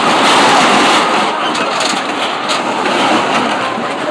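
Excavator engine running steadily at a demolition site, with scattered knocks and clatters of debris.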